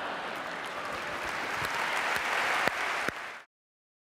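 Audience applauding, growing a little louder before cutting off abruptly about three and a half seconds in.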